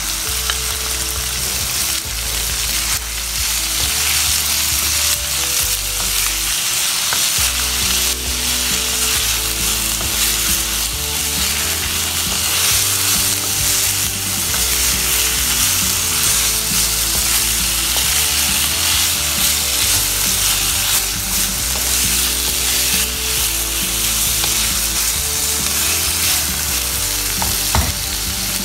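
Chicken, onion and carrot strips sizzling in hot oil in a nonstick wok, a steady hiss, with the light scrape of a wooden spatula stirring the vegetables.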